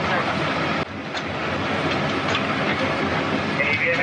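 Steady rushing hum of an airliner cabin's ventilation and aircraft systems while the plane sits parked, with voices faintly over it. The noise dips briefly about a second in.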